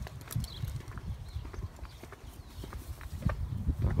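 Footsteps on a concrete sidewalk: a leashed vizsla puppy's paws and claws and the walker's steps, heard as irregular light clicks and taps over a low rumble.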